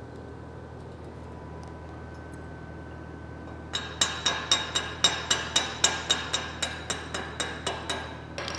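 Slag being chipped off a fresh stick weld bead with a small chipping hammer, after a few seconds of low shop hum. The hammer starts about halfway through and strikes quickly, about four sharp metallic clinks a second, each with a short ring.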